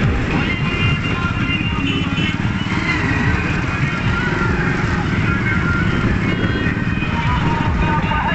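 Motorcycle engines running in a slow convoy, mixed with music playing over them.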